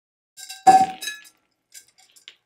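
Metal purse chain and metal tumbler being handled: a few light clinks, one loud ringing clang a little over half a second in, then lighter clinks that taper off.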